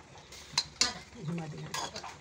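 A spoon stirring a thick, simmering dal in a pan, scraping and clinking against the pan about three times.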